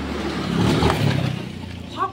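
A small motor scooter's engine passing close by, growing louder to a peak about a second in and then fading as it goes away.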